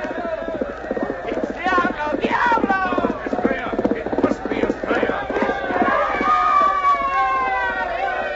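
Galloping horses' hoofbeats, a radio-drama sound effect of a horse race at the finish, fast and dense, thinning out about six seconds in. Voices shout and cheer over them, ending with a long falling yell.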